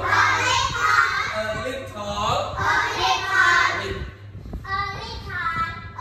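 A class of children chanting English phrases aloud together in a sing-song unison, with a steady low hum underneath.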